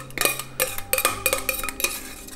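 Metal spoon knocking and scraping against the inside of a stainless steel pot as thick chowder and noodles are scraped out into a cast iron skillet: a quick run of clinks, several with a short metallic ring.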